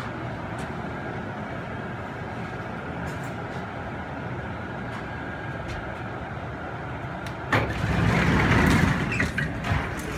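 Automated airport people-mover tram giving a steady hum while stopped at a station. About seven and a half seconds in, its sliding doors open with a sudden louder rush of noise that lasts about two seconds.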